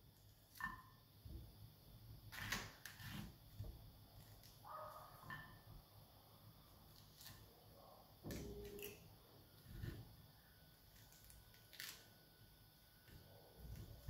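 Mostly near silence, with a few faint, scattered taps and clicks of a fork and knife against a plate as prickly pear fruit is cut up.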